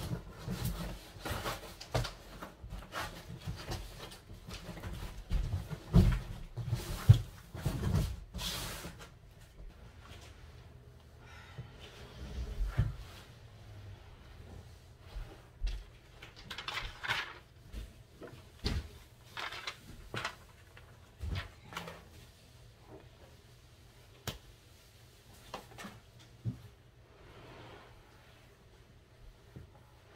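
Irregular thumps, knocks and scrapes from a boxed sofa and its cardboard packaging being moved and handled. The heaviest thumps come a few seconds in, followed by sparser taps and a brief rustle.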